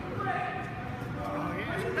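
People talking nearby, with a laugh just at the end.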